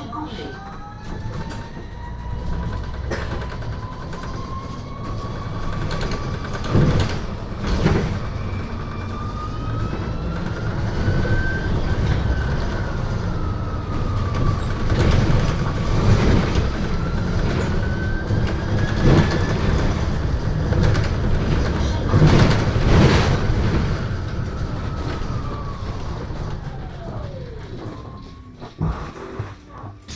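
Electric traction-motor whine of a MAN Lion's City Hybrid bus, heard from inside the cabin. The whine is still climbing at the start, rises and dips in pitch as the bus speeds up and eases off, and drops away near the end as the bus slows. Underneath runs a steady low road rumble, with a few knocks from bumps.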